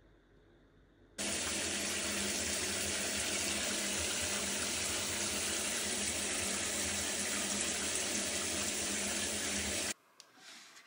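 Water running steadily into a bathtub, an even rushing hiss that starts suddenly about a second in and cuts off abruptly at the end.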